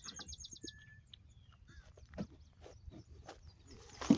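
Faint outdoor birdsong: a quick high trill at the start, then scattered short chirps. A brief soft tap about two seconds in.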